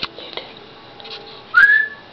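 A short whistle about one and a half seconds in, rising slightly in pitch and then held. Before it come a few faint clicks.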